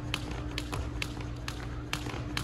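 Jump rope skipping on a wooden floor: quick, even taps of the rope and feet on the boards, about four a second.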